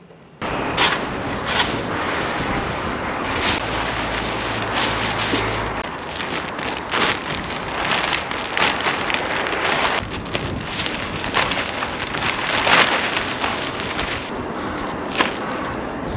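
Wind buffeting the microphone outdoors, with a deeper rumble for the first few seconds. Scattered crackles and rustles run through it as a sack of manure is tipped out and spread by hand over a garden bed.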